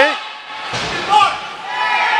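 Ice hockey game: shouting voices in the rink, a sharp knock at the very start and a deep thud a little under a second in from a hit against the boards.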